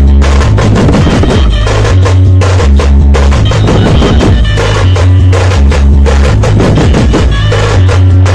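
A dhumal band playing very loud: drummers beat side drums with sticks in a fast, dense rhythm over a heavy bass line of held low notes that change about every second.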